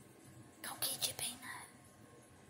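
A person whispering a few soft, breathy words from a little over half a second in to about a second and a half.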